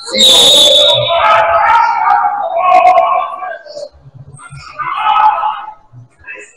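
Referee's whistle, one sharp high blast of under a second, blown as a shot goes up at the rim and stopping play. Players' shouts follow.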